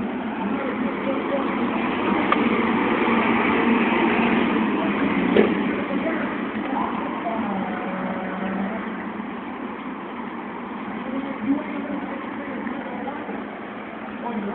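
Indistinct voices over steady street and vehicle noise, with a sharp knock about five and a half seconds in.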